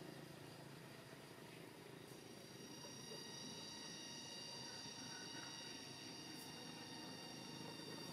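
Faint outdoor background: a low steady hiss with several thin, steady high-pitched tones that come in about two seconds in and hold.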